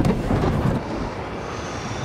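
Heavy low rumble of an aircraft cabin shaking in turbulence, a film sound effect, loudest at the start and easing a little after the first second.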